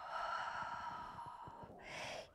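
A woman's long, audible exhalation through the mouth as she rolls up in a Pilates roll-up, the out-breath timed to the effort of curling up. A shorter breath sound follows near the end.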